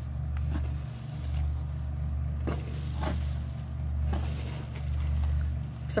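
A steady low hum that slowly swells and fades, with a few faint soft ticks and rustles as hands dig through moist worm-bin compost.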